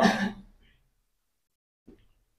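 The trailing end of a man's spoken exclamation, fading out within the first half-second, followed by near silence.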